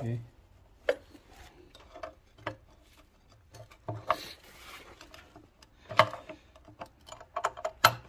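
Steel pry bar clinking and knocking against the 1.4L Ecotec engine's timing cover as the cover is pried loose: scattered sharp metallic clicks, the loudest about six seconds in, with a quick run of clicks near the end.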